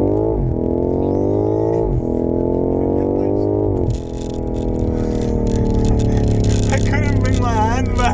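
BMW M5 Competition's twin-turbo V8 at full-throttle acceleration, heard from inside the cabin: the revs climb and drop sharply at three quick upshifts within the first four seconds. After that the engine note falls slowly as the throttle is lifted, with laughter near the end.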